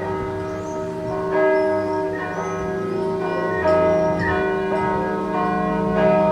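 Church bells ringing from a tower, a new stroke about every second, each ringing on and overlapping the last.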